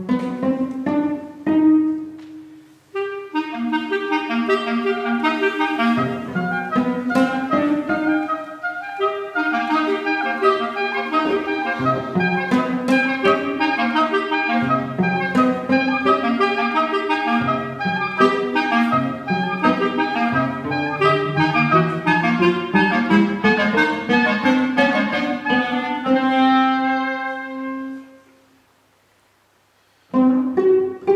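Two clarinets playing a quick, busy chamber-music passage over a cello line in a small ensemble, pausing briefly about three seconds in. The phrase closes on a long held chord and then breaks off into a short pause near the end.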